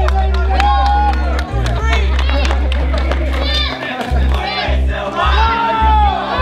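A crowd shouting and cheering at the start of a bicycle race, over background music with a heavy, steady bass line.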